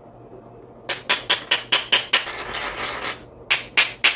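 Hand pepper grinder twisted over a pot, grinding peppercorns: a fast run of crunching clicks starting about a second in, a short continuous grind, then two sharp clicks near the end.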